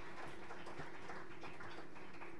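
Light, scattered clapping from a few people, fading out over the first second and a half, over a faint steady room hum.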